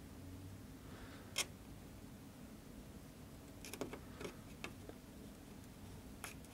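Light clicks and taps of small metal soldering tools against model railroad track while a feeder wire is soldered to the rail: one sharp click about one and a half seconds in, then a quick cluster of faint clicks around four seconds, over a faint steady hum.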